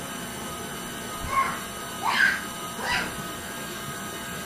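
KitchenAid Ultra Power stand mixer running steadily at its lowest speed, its dough hook kneading bread dough. A few short high squeaks that rise and fall sound over it, about one, two and three seconds in.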